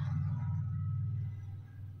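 A woman's low, closed-mouth hum, an appreciative "mmm" as she tastes the berry-flavoured lip mask on her lips, fading out over about a second and a half.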